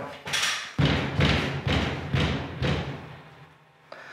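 A fist knocking and thumping on a low suspended false ceiling: a quick run of thuds that die away about three seconds in. The ceiling panel is loose and not stable, hung on cables as far as he can tell.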